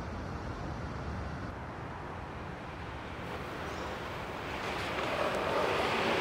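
Steady city traffic ambience: an even, dull rumble that grows a little louder near the end.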